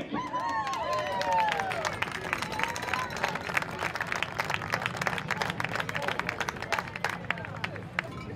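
Stadium crowd clapping and cheering, with a few voices whooping in the first two seconds, then steady scattered clapping that carries on almost to the end.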